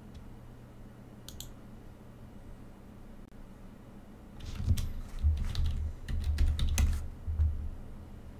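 Typing on a computer keyboard: a quick run of keystrokes with dull low thuds, starting about halfway through and stopping shortly before the end, entering a login password. A faint single click comes about a second in.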